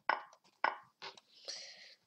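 Online chess move sounds: short wooden clacks of pieces being placed on the board as captures are traded at bullet speed, about four in under two seconds, followed by a brief hiss.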